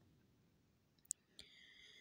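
Near silence, broken by a single sharp click a little after a second in, then a second, softer click followed by a faint high ringing.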